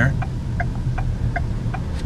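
Steady low hum and rumble of a car's cabin while driving, with a turn signal ticking about two and a half times a second.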